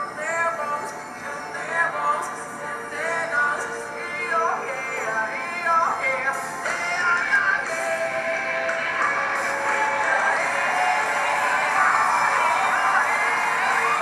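A singer's live stage performance of a rock song with band backing. The sung line stands out in the first half, and about halfway through the music swells into a fuller, louder passage.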